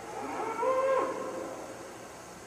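A calf mooing once, a call of about a second that rises slightly at first and then holds its pitch.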